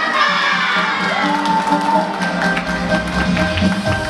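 A crowd cheering and shouting, with a long call about a second in, over music playing underneath.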